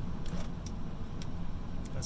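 A 1995 Ford F-150's 5.8-litre 351 Windsor V8 idling steadily, heard from inside the cab.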